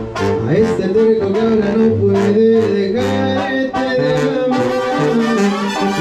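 Regional Mexican band music with brass horns playing sustained melody notes over a low bass line and a steady beat, in an instrumental passage between sung lines.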